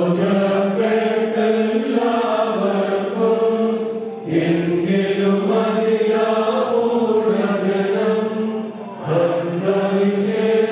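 Many voices chanting an Orthodox liturgical hymn together in long, slow held phrases, with brief breaks about four seconds in and near the end. A low held note sounds beneath the voices from about four seconds in.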